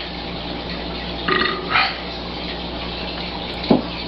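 A man burps twice in quick succession about a second and a half in, over a steady background hiss, and a short thump comes near the end.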